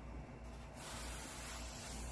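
Air blown through a telescoping pocket fire bellows, a faint, steady hiss that starts about a second in.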